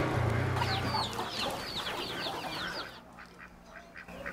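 High, quick, falling chirps of small birds or chicks, about a dozen in a row over two seconds. They play over the low steady hum of a small motorbike engine, which fades out about a second in.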